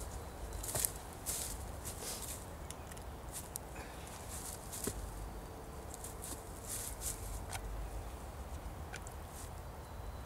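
Footsteps and rustling in dry forest leaf litter, followed by light handling sounds with a few small clicks as a knife and a piece of wood are picked up.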